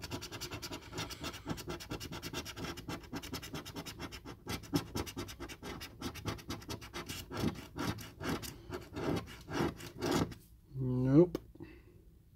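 A coin scraping the scratch-off coating of a paper lottery scratch card in quick, repeated strokes, stopping about ten seconds in as the panel is cleared.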